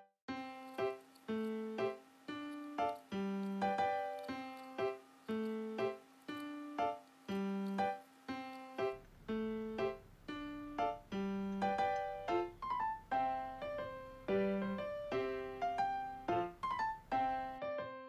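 Background piano music: a light melody of short, evenly paced notes.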